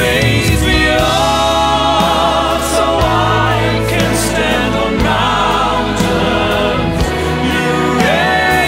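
Studio recording of a choir and solo voices singing long notes with vibrato over an orchestra and band, with a steady low bass and a drum hit about every two seconds.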